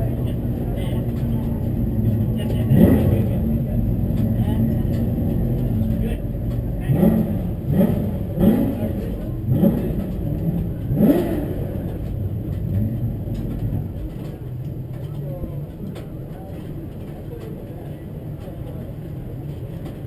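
Porsche Carrera Cup race car's engine idling, with a run of five or six short throttle blips, each a quick rise in pitch, between about seven and eleven seconds in. The sound then grows quieter toward the end.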